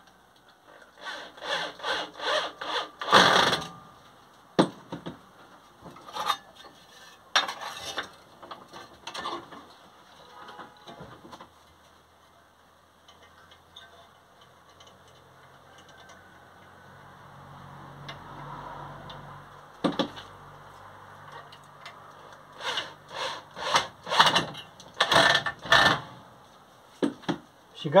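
Wood screws being driven through metal brackets into a round wooden handle, in bursts of rapid creaking, scraping clicks near the start and again near the end. A low steady hum of a small motor runs for a few seconds past the middle.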